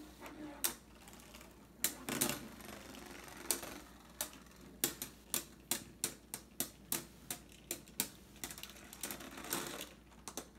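Two Beyblade spinning tops battling in a plastic stadium: a run of sharp plastic clacks as they collide, a few at first, then quickening to about two or three a second in the second half.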